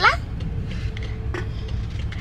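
Steady low rumble of a car's engine and road noise heard inside the cabin, with a faint click about one and a half seconds in.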